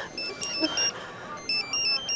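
Mobile phone ringing with an electronic ringtone: a quick tune of short high beeps, breaking off for about half a second in the middle and then starting again.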